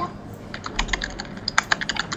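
Typing on a computer keyboard: a quick, irregular run of keystroke clicks that starts about half a second in.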